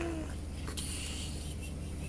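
A short held vocal 'ooh' trailing off right at the start, then a soft click and a faint high squeak over a steady low hum.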